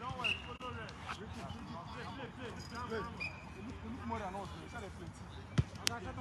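Players' voices and shouts carrying across an outdoor soccer pitch, with a sharp thud of a football being struck near the end.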